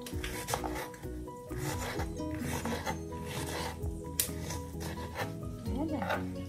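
Kitchen knife slicing through a raw onion onto a wooden cutting board, a series of irregular cuts and scrapes, over background music.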